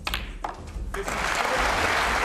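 Snooker crowd applauding in a large hall. The applause swells in about a second in, after a few sharp clicks, and then holds steady; it greets the close of a frame.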